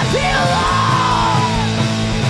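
Two-piece punk rock band playing live: distorted electric guitar and driving drums, with a yelled vocal line that slides down in pitch over the first second and a half.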